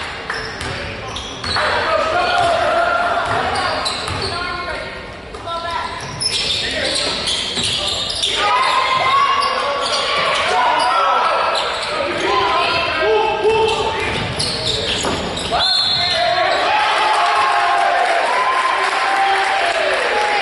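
Spectators talking close by, over a basketball bouncing on a hardwood gym floor during play, all with the echo of a large gym.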